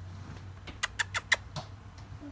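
A quick run of five short, squeaky lip-kissing sounds, the kind made to call a dog, about a second in.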